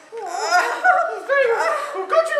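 People laughing loudly in high-pitched voices, starting just after a brief lull.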